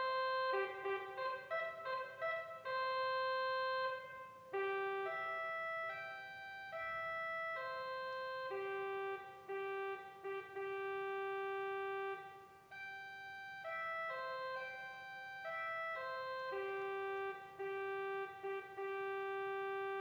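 Slow organ music: long held notes of a simple melody, changing every second or so.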